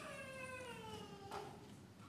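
A faint, high-pitched drawn-out cry that slowly falls in pitch for about a second and a half.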